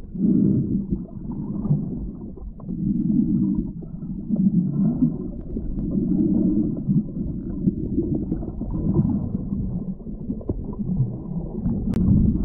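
Muffled underwater rumble and gurgle of flowing river water, swelling and fading every second or two.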